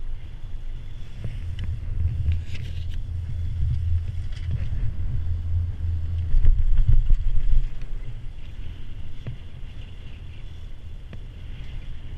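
Poma four-seat chairlift riding over a tower's sheave train: a low rumble with a few clacks from the rope and rollers, loudest about six to seven seconds in as the chair passes under the tower, with wind on the microphone.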